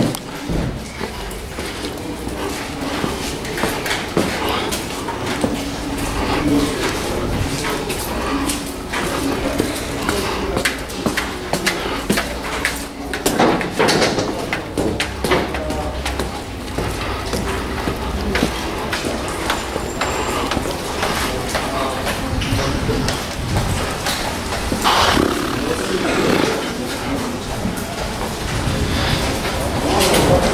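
Footsteps and handling noise of a handheld camera going down a stairwell, with indistinct voices of other people.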